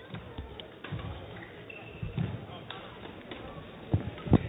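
Quiet indoor sports-hall ambience with scattered dull thumps on the floor and faint distant voices, with a brief faint high tone just before two seconds in.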